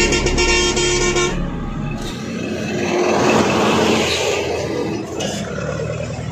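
A vehicle horn sounds for about a second. Then road-traffic noise swells as a vehicle passes and fades again.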